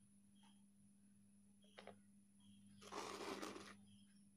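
Near silence with a faint steady hum, a small click about two seconds in, then a brief scraping rustle lasting under a second about three seconds in, from a knife cutting through the soft cake in its metal pan.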